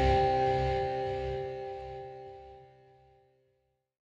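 The final chord of a heavy rock song ringing out, with a few sustained notes dying away to nothing within about three seconds.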